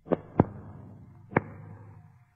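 Three sharp knocks or hits, two in quick succession near the start and a third a second later, each followed by a reverberant tail.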